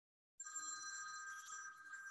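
A telephone ringing faintly with a steady electronic tone, starting just under half a second in: an incoming call that is taken for a spam cold call.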